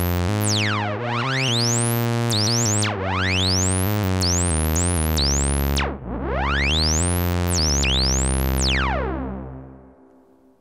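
Moog Grandmother analog synthesizer playing a line of notes with oscillator sync on and its envelope driving oscillator 2's pitch. The harmonically rich, metallic tone sweeps up and back down through its overtones with each new envelope, about one, three and six seconds in. The effect is a little bit too dramatic, and the last note fades out near the end.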